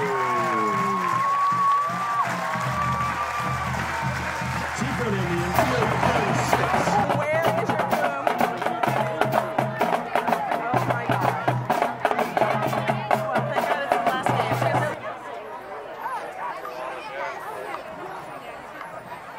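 Marching band playing: a drumline striking quick rhythms under a held brass note, with crowd voices mixed in. The music drops away suddenly shortly before the end, leaving quieter crowd chatter.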